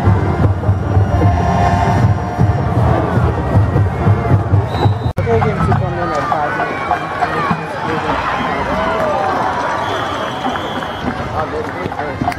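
Music with a heavy, steady low beat, cut off suddenly about five seconds in, followed by a stadium crowd shouting and cheering.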